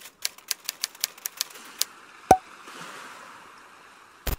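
Typewriter keystroke sound effect: about ten quick, uneven key clicks in the first two seconds, then one sharper hit with a brief ringing tone, followed by a faint soft hiss.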